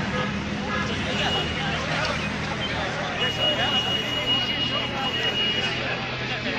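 Indistinct voices of people talking, over a steady low hum, with a thin steady high tone in the second half.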